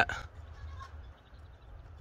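The end of a man's spoken word, then a quiet stretch of low, steady background noise with no distinct events.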